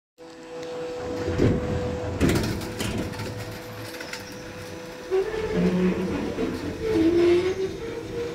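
Up-and-over garage door being swung open: a few knocks from the handle and mechanism in the first three seconds, then wavering squeaks from about five seconds in as it rides up into the open position.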